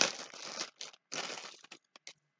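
A small plastic bag crinkling and rustling in irregular bursts as it is handled and opened by hand, loudest at the start and thinning out towards the end.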